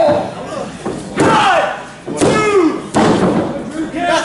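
Three sharp slams on a wrestling ring, about a second apart, the first two each followed by a loud shouted cry.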